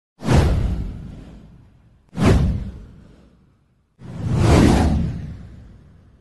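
Three whoosh sound effects from an intro title animation. The first two start abruptly and fade over about a second and a half each; the third swells up more gradually and fades out near the end.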